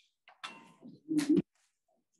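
A faint click or two, then a man's short, low murmur at the lectern microphone a little over a second in.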